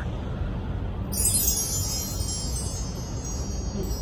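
High, shimmering chimes ringing, starting about a second in, over a steady low background noise.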